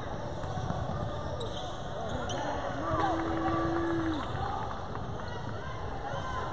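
Basketball game sounds on a hardwood court in a large, echoing gym: a ball bouncing, sneakers squeaking and players and spectators calling out. A steady low held tone sounds for over a second about three seconds in.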